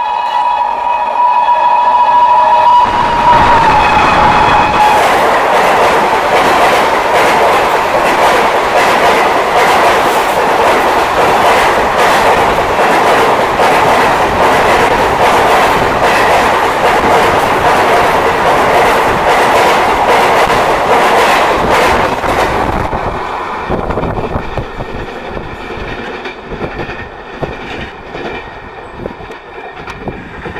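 WAP7 electric locomotive's horn sounding steadily on approach and dropping slightly in pitch as it passes. It is followed by an express train running through at speed, its wheels clattering over the rail joints. The noise fades from about 23 seconds in as the train draws away.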